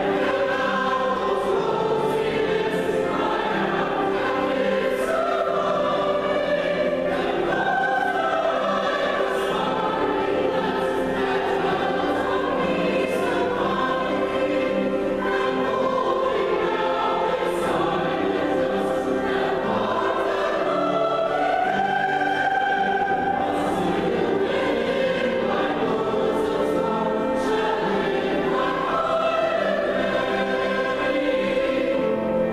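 A mixed choir of women's and men's voices singing a piece in parts, with piano accompaniment. The notes are held and move smoothly, with the singers' 's' consonants cutting through now and then.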